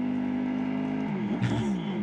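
Yamaha YZR-M1 MotoGP bike's 800 cc inline-four engine holding one steady note for about a second, then revved up and down in quick swings.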